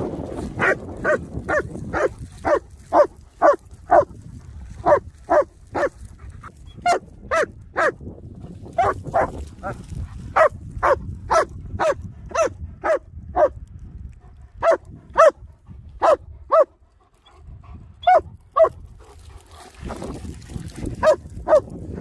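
German shepherd barking over and over, about two barks a second, with a few short pauses.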